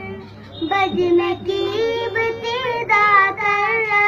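A young boy singing a nasheed solo, holding long wavering notes after a brief breath about half a second in.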